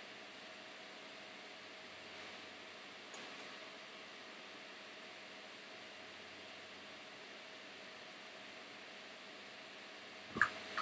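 Near silence: a faint steady hiss of room tone, with one small click about three seconds in.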